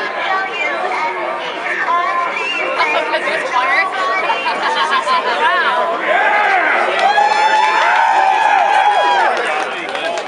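Crowd of spectators chattering, many voices overlapping. From about six seconds in, one louder voice rises above them with long, held calls for about three seconds.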